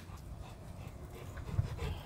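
A dog panting close by, tired out after running and swimming.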